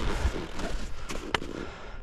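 Skis scraping over wind-crusted snow, with several sharp clicks, the loudest about a second and a half in.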